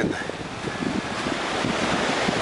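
Ocean surf washing on the beach with wind buffeting the microphone in uneven low rumbles.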